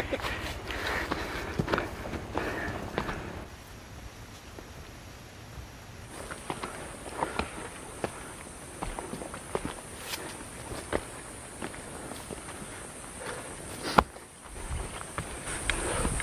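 Footsteps of hikers walking on a dirt mountain trail, uneven steps with rustling as they brush through tall grass. There is a single sharp knock about fourteen seconds in.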